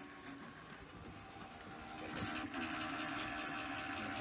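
Desktop computer tower running, its fan whirring steadily and growing louder about two seconds in as the tower comes close.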